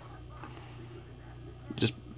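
Quiet room tone with a low steady hum, and one short sound near the end.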